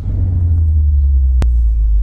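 Deep, loud bass rumble of a cinematic intro sound effect, steady throughout, with a single sharp click about one and a half seconds in.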